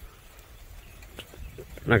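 Faint, steady hiss of light rain with a low rumble underneath, then a man's voice starts near the end.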